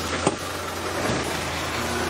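A vehicle's engine running with a steady low hum under a rough noisy background, and one sharp knock about a quarter second in.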